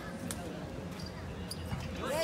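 A basketball bouncing on a hard outdoor court: a few separate, sharp bounces, as at the free-throw line before a shot.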